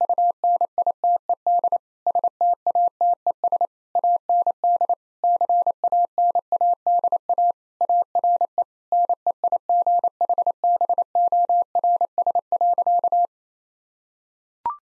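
Morse code sent at 28 words per minute as a single steady mid-pitched beep keyed on and off in dots and dashes, spelling out "The United States and Canada are neighbors". It stops shortly before the end.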